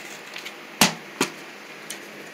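Two short knocks over quiet room tone, a sharp one just under a second in and a softer one a moment later: handling noise from a hand moving paper cutout puppets and the camera.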